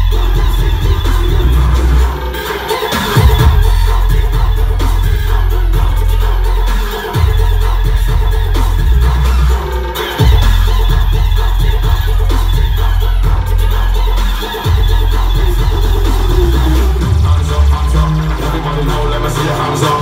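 Future house DJ mix with a heavy bass line that drops out briefly several times before coming back in.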